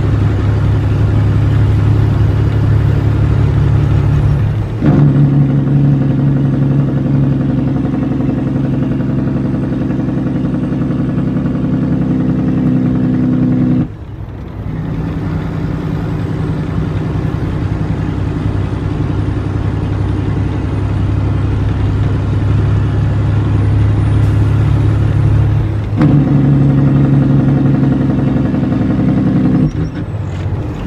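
International 9400 truck's diesel engine pulling on the road, heard from inside the cab. The engine note steps up sharply about five seconds in and again near the end, and drops off for a moment about halfway through before building again.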